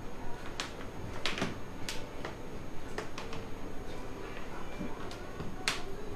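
Scattered sharp clicks and knocks, about eight of them at irregular moments, over a faint room background.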